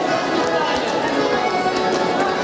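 Dance music playing over the voices of a crowd, with the stepping of many dancers' feet on the floor.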